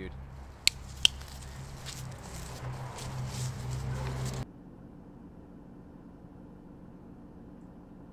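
Outdoor street ambience: a low steady rumble with two sharp clicks about a second in. About four seconds in it cuts off abruptly to quieter indoor room tone.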